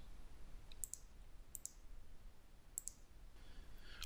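Computer mouse button clicking: three faint, sharp clicks about a second apart, each a quick double snap of press and release.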